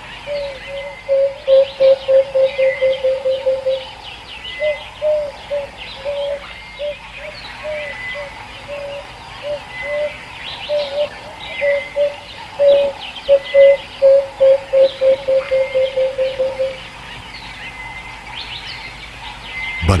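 Wild birds calling. One bird repeats a low, hooting note, twice in runs that quicken as they go, with single spaced notes between the runs. Softer high chirps and twitters from other birds carry on throughout.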